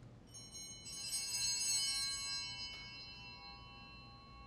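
A set of altar bells shaken briefly, a cluster of high bell tones jangling and then ringing out and fading. They are rung as the priest receives Communion.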